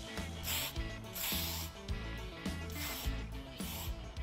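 Background music with about four short hissing bursts from a hand trigger spray bottle, spraying prep wash onto a bare steel panel.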